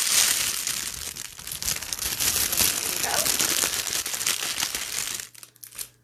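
Wrapping crinkling and rustling as it is pulled off a handmade novelty soap. It runs steadily, then stops about five seconds in.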